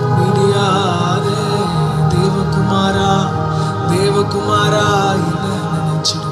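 A man singing a slow Tamil Christian worship song, drawn-out notes with a wavering vibrato, over a steady sustained instrumental backing.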